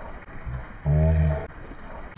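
A short, low, steady vocal sound, held for about half a second starting about a second in, with a faint low murmur over background noise.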